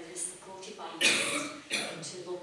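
A person coughing twice, loud and close to the microphone: one cough about a second in and a shorter one just before the end, after a few words of a woman's speech.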